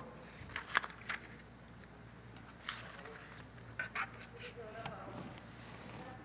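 Quiet room tone with a steady low electrical hum, faint off-microphone voices and a scattered handful of small clicks and knocks.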